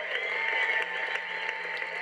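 Theatre audience applauding the cast's curtain call: dense clapping, with long held tones over it.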